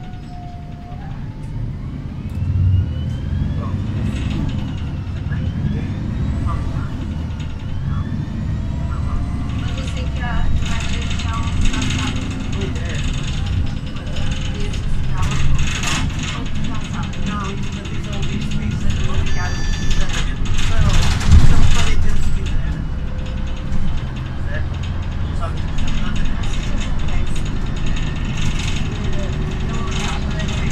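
Inside a 2007 MAN NL313 CNG city bus on the move: the gas engine's low drone and the Voith automatic gearbox, with rising whines in the first few seconds as it pulls away. Body and fittings rattle and knock over the road, loudest about 21 seconds in.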